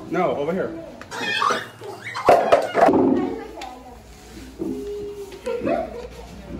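Indistinct voices of people and children talking, with a sharp knock a little past two seconds in.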